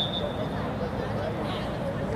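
Distant voices and chatter of spectators and players across an open field. A brief high-pitched tone sounds right at the start and fades within half a second.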